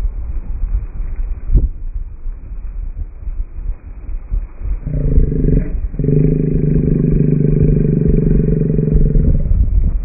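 Sportfishing boat's engine noise with low wind rumble on the microphone. About five seconds in, a steady engine drone rises and drops out for a moment, then holds until just before the end.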